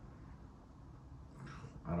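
A pause in a man's speech: faint low room hum, then a breath, and his voice starts again at the very end.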